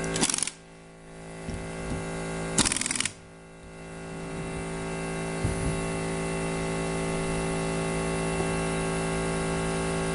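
Handheld pneumatic capping tool running briefly as it screws a flip-top cap onto a plastic bottle, its air-motor noise cutting off about half a second in, followed by a second short hiss of air about three seconds in. A steady hum with several fixed tones stays underneath.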